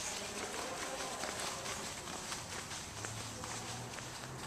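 Quick, irregular footsteps on a bare concrete floor: a dog's claws clicking as it moves around the parked cars, with a person walking close behind.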